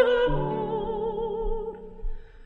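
Operatic mezzo-soprano holding one long note with vibrato over plucked guitar accompaniment, the note fading near the end.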